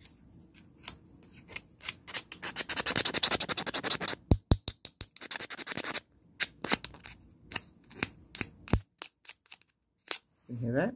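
Fingers rubbing and clicking close to the microphone as a hearing-test sound. There is a run of sharp clicks, a dense scratching burst about two to four seconds in, then spaced single clicks.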